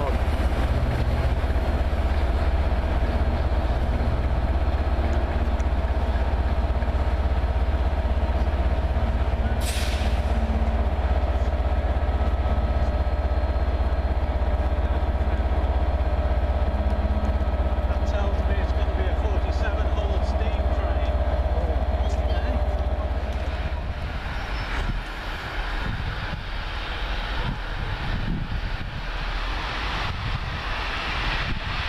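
Diesel locomotive engine running with a loud, steady low drone that eases off about 23 seconds in. About ten seconds in there is a short sharp hiss of air.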